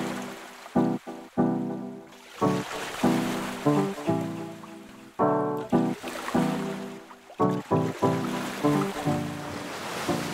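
Background music: a track of pitched notes struck in a steady rhythm.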